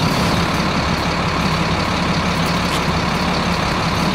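A large vehicle's engine running steadily, with a constant hiss over it.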